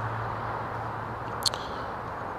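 Steady outdoor background noise with a low, even hum underneath, and one brief high hiss about one and a half seconds in.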